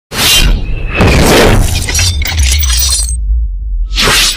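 Cinematic logo-intro sound effects: a shattering crash at the start and another about a second in, over a deep bass rumble. Just after three seconds the crash noise drops away, leaving the rumble, and a whoosh swells in at the end.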